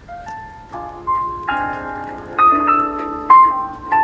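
Background piano music: a few soft single notes, then fuller chords from about a second and a half in, growing louder.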